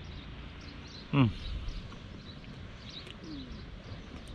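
Faint, scattered high bird chirps over a steady low background hum outdoors. A man's short closed-mouth 'mm' of appreciation comes about a second in while he chews a pastry.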